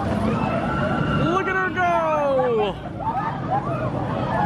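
Flight of the Hippogriff family roller coaster train rumbling past overhead, with riders' voices and shouts over it. One long falling cry comes about two seconds in.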